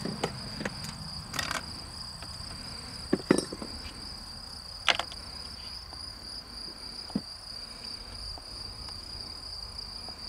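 Crickets trilling in a steady, high-pitched continuous drone, with a few brief sharper chirps or clicks over it, the loudest about three and five seconds in.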